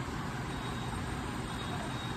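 Steady background rumble and hiss of room noise, even throughout, with no distinct events.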